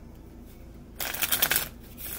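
A deck of tarot cards shuffled by hand: quiet for about a second, then a quick run of card flutters lasting about half a second.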